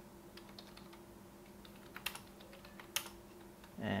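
Typing on a computer keyboard: light, scattered keystrokes, with two louder clicks about two and three seconds in.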